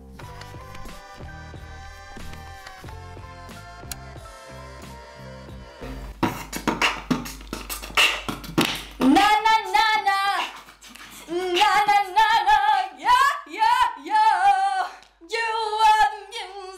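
Soft background music for the first six seconds. Then a mouth-made beatbox beat starts, and from about nine seconds a voice sings loud, wavering phrases over it.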